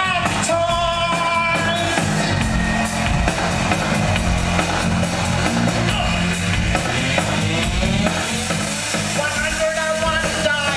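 Live post-punk band playing loud, with drums, bass and keyboards, recorded from the crowd. A male singer holds wavering sung notes over it in the first two seconds and comes in again near the end.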